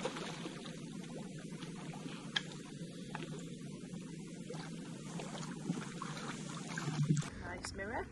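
Lake water sloshing and splashing as a hooked carp is played and drawn into a landing net by an angler wading in the shallows, with a few sharp clicks over a steady low background noise. The sound changes abruptly about seven seconds in.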